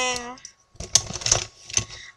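Pens and other small stationery clicking and rattling against each other as hands rummage inside a zippered pencil case, a quick irregular run of small clicks in the second half.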